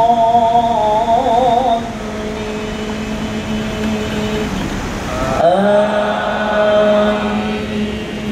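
A man's voice chanting Qur'anic recitation over a loudspeaker in long, drawn-out held notes. It wavers melismatically about a second in, breaks off after about four and a half seconds, then glides up into another long held note.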